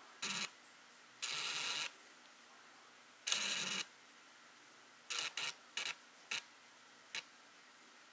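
Camera lens autofocus motor whirring in short bursts picked up by the camera's own microphone as the focus hunts: three longer whirs in the first four seconds, then five quick ones.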